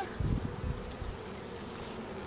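Honeybees buzzing around an open hive, a steady hum, with a few low rumbles in the first second.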